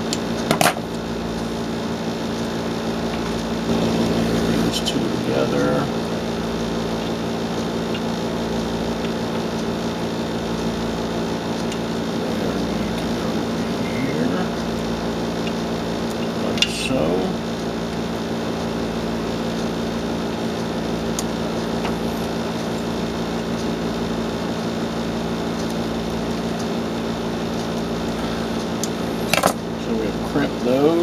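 A steady machine hum of several pitched tones runs throughout. A few small clicks and knocks of wires and tools being handled sound over it, a sharp one about half a second in and others near the middle and end.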